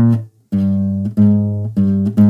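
Classical guitar playing only its bass line, single low notes plucked with the thumb on the bottom two strings over a C minor chord shape, with no fingerpicked treble notes. One note dies away just after the start, then after a short gap three more low notes follow, about every 0.6 s, each ringing until the next.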